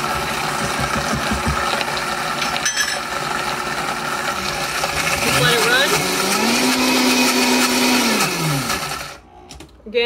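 Vita-Prep blender motor running at high speed, blending a herb pesto. About five seconds in it gets louder as its pitch rises and holds, then it winds down and stops about nine seconds in.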